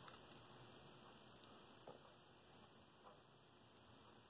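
Near silence: room tone with faint hiss and a few tiny clicks.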